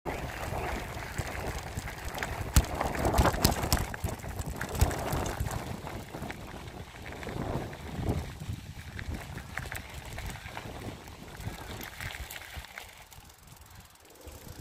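Bicycle ridden over a dirt and gravel path, with wind on a handlebar-held phone microphone and tyre and frame rattle. Several sharp knocks from bumps come in the first five seconds, and it quietens near the end.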